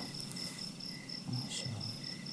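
A cricket chirping faintly in a steady, evenly pulsed high trill, with one short soft sound about a second and a half in.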